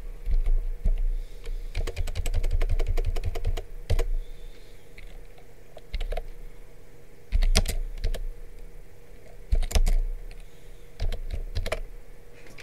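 Typing on a computer keyboard in short bursts of keystrokes, with a fast run of repeated key presses about two seconds in and smaller groups of clicks later on.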